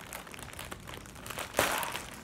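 White plastic poly mailer bag crinkling as hands grip and pull at it, with a short, loud rip about one and a half seconds in as the bag tears open.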